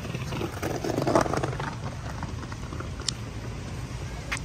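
Skateboard wheels rolling past on a paved walkway, a rough rolling noise that swells and fades about a second in, ticking over the paving joints.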